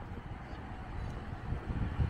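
Low rumble of street traffic and wind on the microphone, growing a little louder over the second half as a car comes down the street.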